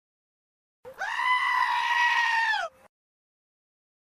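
A single long, high-pitched cry, held steady for nearly two seconds and dropping in pitch as it ends.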